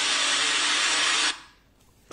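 Loud, steady hissing machinery noise from a factory video played on a phone, cutting off abruptly just over a second in.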